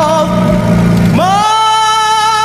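A singing voice holds long notes with vibrato over soft backing music, moving to a new held note just after a second in. A motorcycle engine runs low beneath it and drops away about one and a half seconds in.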